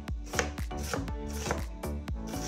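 Knife chopping vegetables on a cutting board, three strokes about half a second apart, over background music with a steady beat.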